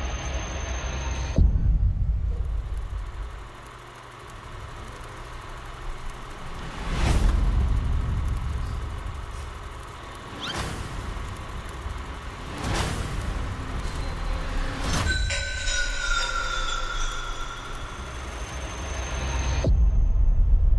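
Horror-trailer sound design: a low rumbling drone punctuated by about five heavy impact hits a few seconds apart, with a descending whistle-like tone after the last hit.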